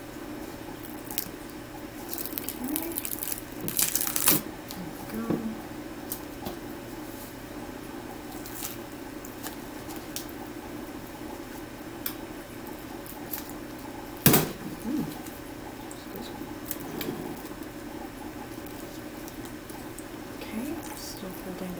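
Adhesive medical tape being peeled slowly off an IV practice pad: quiet scattered crackles and rustles, a louder stretch of rustling around four seconds in and one sharp click about fourteen seconds in.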